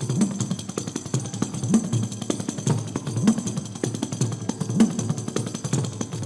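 Kanjira, the South Indian frame drum with a single jingle, played in a fast run of finger strokes. A deep stroke bends in pitch about every second and a half, and the jingle rattles over the strokes.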